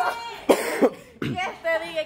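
Short bursts of a person's voice without words, with a cough-like burst about half a second in and a shorter falling vocal sound after it.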